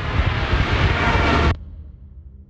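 Loud roar of a low-flying warplane in a film-trailer sound mix, cutting off abruptly about one and a half seconds in and leaving a faint low music drone.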